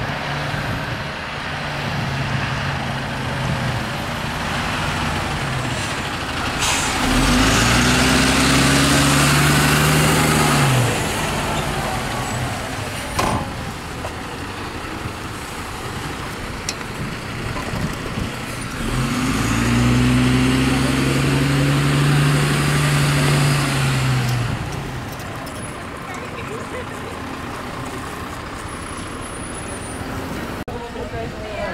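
Heavy diesel fire-truck engines running. Twice the engine note rises, holds for several seconds and falls away. There is a sharp click about midway.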